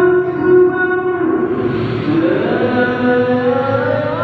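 A man chanting in Arabic into a microphone, a solo devotional call sung in long, held, ornamented notes. One phrase ends about a second and a half in, and after a short break a new phrase rises in.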